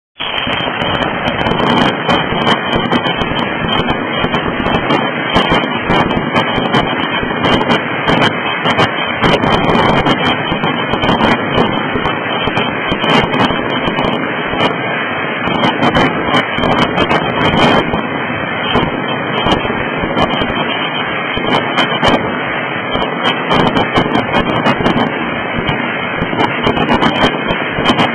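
Fireworks bursting close by: a loud, continuous crackle of many overlapping pops and bangs with no break.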